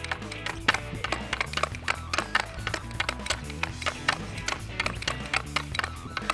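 Background music with a bass line, over quick, irregular clacks of a hockey stick blade handling a hard plastic off-ice puck on concrete.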